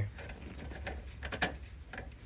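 Faint, scattered clicks and light taps of small metal parts being handled: the steering rack's adjuster and its spring, just taken off the rack housing. A low steady hum sits underneath.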